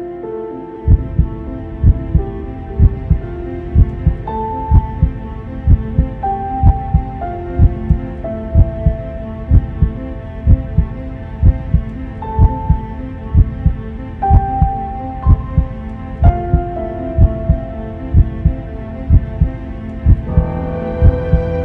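A heartbeat sound effect beating steadily, a double thump a little more than once a second, starting about a second in. It sits over slow music of held melodic notes.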